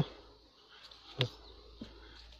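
Quiet pause with a sharp click about a second in and a fainter tick near the end, as the plastic air filter housing of the Rover 45 V6 is handled.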